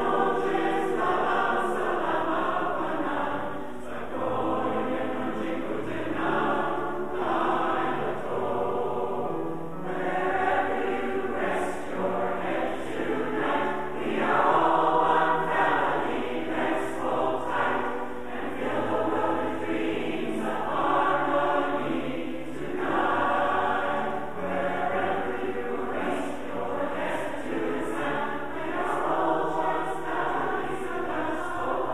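Large mixed-voice community choir singing in harmony, phrase by phrase, with short dips between phrases.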